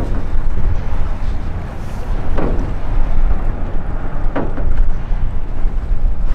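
Wind buffeting the microphone: a heavy, uneven low rumble that swells and dips.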